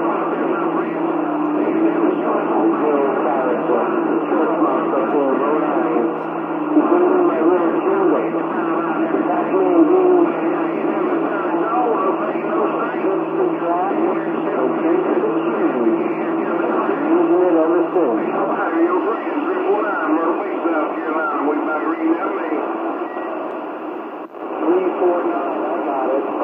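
CB radio receiver audio: distant stations talking over the channel, garbled and too weak and noisy to make out, band-limited through the radio's speaker with a steady low tone underneath.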